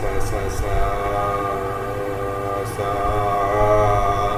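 A man singing long held notes of the Indian sargam, sa-re-ga syllables, slowly moving from note to note, with a steady low electrical hum underneath.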